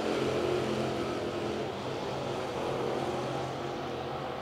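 Dirt late model race cars' GM 602 crate V8 engines droning steadily as the field laps the dirt oval, easing off slightly partway through.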